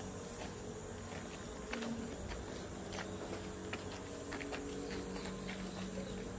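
Steady buzz of insects with a low steady hum beneath it and a few light scattered clicks.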